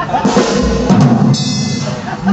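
A live drum kit struck a few times, with a deep bass-drum thump just over half a second in and a cymbal-like hiss near the end.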